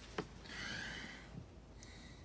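A short click, then a soft, faint breath close to the microphone, an inhale between sentences.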